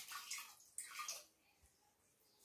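Hands patting and pressing roti dough on a flour-dusted board: a few faint soft pats and brushing scuffs in the first second or so, then quieter.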